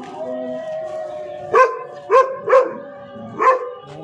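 Pointer barking four times in about two seconds, short high barks, over a steady whining tone that fades out about two seconds in.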